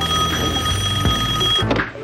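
Telephone ringing: one ring of steady high tones lasting about a second and a half, then cutting off.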